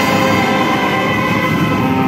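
Brass band of trumpets, trombones and tubas playing loud, held chords together.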